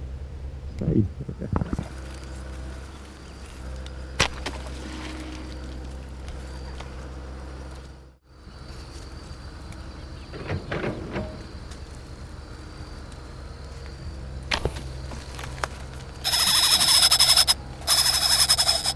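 A slingshot fishing arrow shot near the end: a loud whizzing hiss lasting just over a second as the arrow flies and line spins off the spincast reel. Before it, only light clicks and handling noise over a steady low hum.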